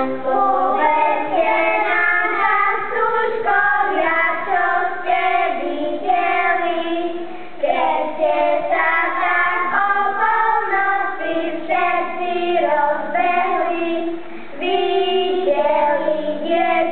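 A group of children singing a Christmas church song together, in phrases with two brief pauses for breath.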